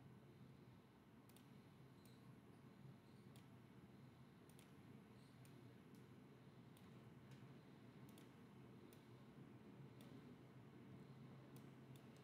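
Faint, irregular computer mouse clicks, roughly one or two a second, over near-silent room tone with a low hum.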